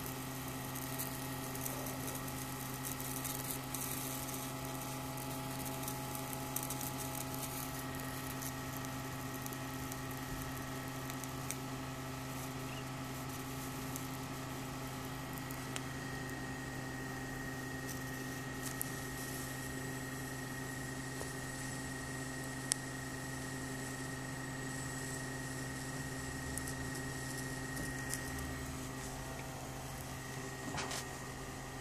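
ZVS flyback driver running with a steady electrical hum, under the faint hiss and crackle of high-voltage discharge through the hot bulb glass, with a few sharp snaps. The high tone of the driver strengthens about halfway through.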